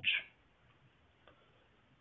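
A man's voice ending a word, then near silence with a couple of faint ticks.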